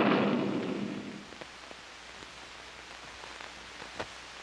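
The tail of a crash-like burst of noise dies away over about the first second. After it comes faint hiss with a few soft clicks.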